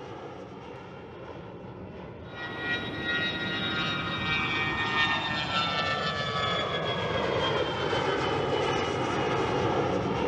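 Jet aircraft turbofan engine running, heard from the RQ-4 Global Hawk. It is a steady rush for the first two seconds, then louder, with a many-toned whine that falls slowly in pitch.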